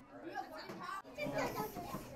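Low, scattered chatter of young children's voices in a classroom.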